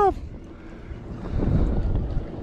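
Wind buffeting the microphone: a low noise without any tone that swells about a second and a half in. The tail of a shouted word is heard at the very start.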